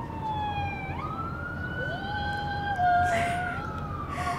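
Emergency vehicle siren wailing in the distance: a slow wail that falls in pitch, jumps back up about a second in and sweeps slowly up and down again, with a second, lower siren tone joining for a couple of seconds in the middle.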